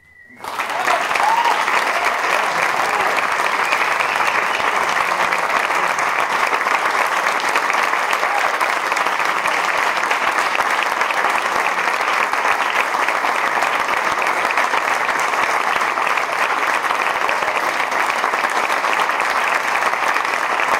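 Audience applauding, breaking out about half a second in and continuing steadily.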